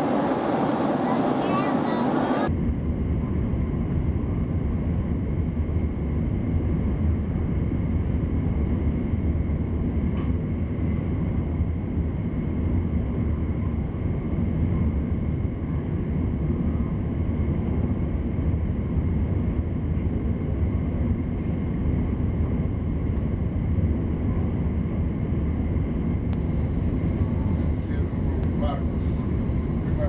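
A steady, muffled low rumble that holds level throughout; near the end a few faint clicks come in over it.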